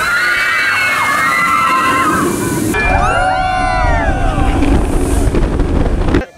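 A train-load of riders on a B&M dive coaster screaming together, many voices overlapping in two waves; under the second wave a low rumble of the coaster train sets in.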